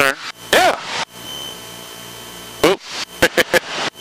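Steady drone of a Cessna 162 Skycatcher's engine and propeller in flight, heard inside the cockpit, under a spoken word and a short laugh.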